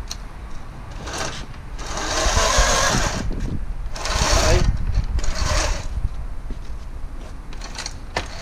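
Electric motor of a Beta electric mini motocross bike whirring in four short bursts as the throttle is worked, the second burst the longest and loudest at a little over a second.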